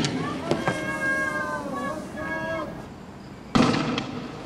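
Raised voices shouting in long, high calls, then a single sharp, loud bang near the end that dies away quickly, heard during a night street clash.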